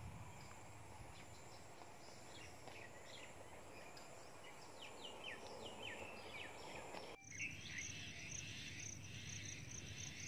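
Faint outdoor ambience with birds giving short, repeated falling chirps. From about seven seconds in, after an abrupt break, an insect trills with a rapid, steady, high-pitched pulsing.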